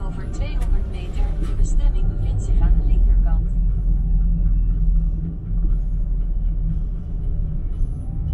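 Low, steady rumble of a car driving over brick paving, heard from inside the cabin. In the first three and a half seconds a high, warbling voice-like sound runs over it.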